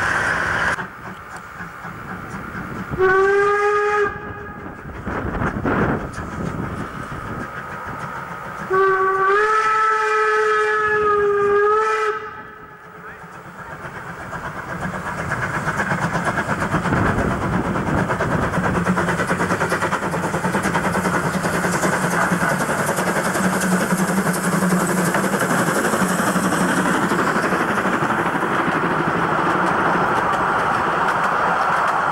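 Steam whistle of a narrow-gauge 2-10-2 tank locomotive, sounded twice: a short blast, then a longer one of about three seconds. After that the train runs past with a steady rumble that grows louder.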